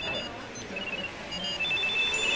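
Several phones chiming with message notifications at once: short high electronic pings at different pitches, overlapping and repeating through the moment.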